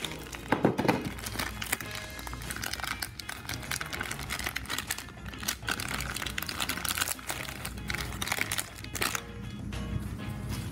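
A thin clear plastic bag crinkling in irregular bursts as it is worked open by hand, with background music underneath.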